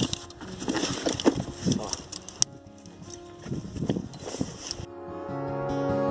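Scattered knocks, scrapes and brief voice sounds from a climber filming himself on the rock. About five seconds in these give way to acoustic guitar music.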